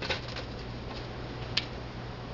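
Soft rustling and small clicks of hands laying thin-sliced deli ham onto a paper plate, with one sharp click about one and a half seconds in, over a steady low hum.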